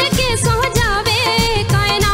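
A woman singing a Punjabi song with a wavering, ornamented vocal line, backed by a live band with a steady drum beat underneath.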